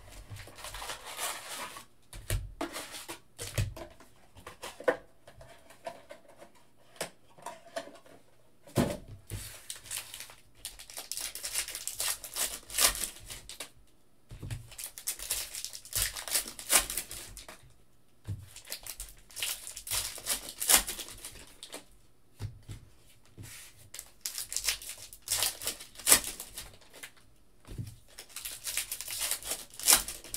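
Foil trading-card packs torn open and crinkled by hand, in bursts of crackling every few seconds, with sharp clicks and taps of cards and packs being handled between them.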